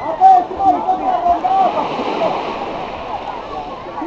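Several high-pitched voices shouting and calling over one another, with water splashing behind them.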